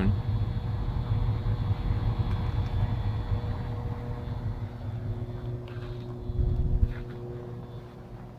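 IVT Air X 90 air-source heat pump outdoor unit running under full load: a steady low hum of fan and compressor with a faint steady tone, joined by a second lower tone about five seconds in. Its evaporator coil is heavily iced and due for a defrost cycle.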